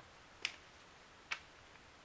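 Two short, sharp clicks from a deck of playing cards being handled and dealt onto a tabletop, a little under a second apart, over quiet room tone.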